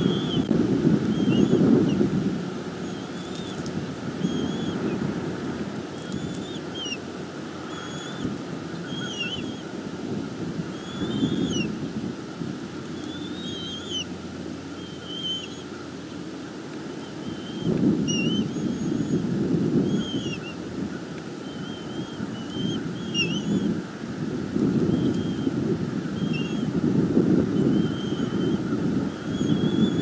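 Wind buffeting an outdoor microphone in gusts, strongest near the start and again through the second half. Short high bird chirps repeat about once a second throughout.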